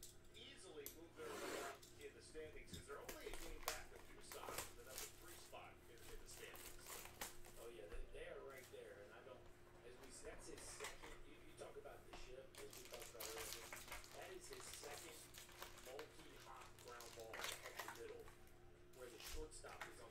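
Cellophane wrap crinkling and tearing as a sealed trading-card hobby box is unwrapped and opened, then foil card packs rustling as they are taken out and handled. Faint, irregular crackles and rustles.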